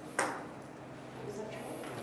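A single short, sharp click about a fifth of a second in, dying away quickly, followed by low room noise.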